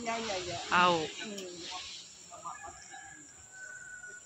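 A person's voice speaking briefly, with a loud high-pitched vocal sound about a second in. Then a quieter background with a faint thin whistle-like tone near the end.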